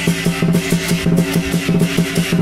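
Lion dance percussion ensemble playing for a pole-jumping lion dance: a large drum beaten in a fast, steady rhythm with cymbals and gong ringing over it.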